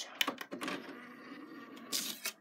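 A couple of button clicks, then a DVD player's disc-tray motor running steadily for about a second and a half as the tray slides open.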